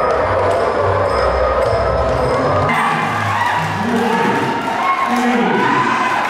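Live Kun Khmer ring music, drums beating about twice a second under a reedy melody. About three seconds in the drum stops, and shouting and cheering from the crowd rise over the music.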